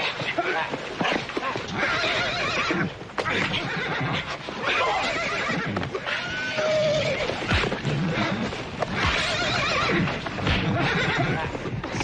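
Several horses whinnying over and over, with hooves stamping and the scuffling thuds of a fistfight.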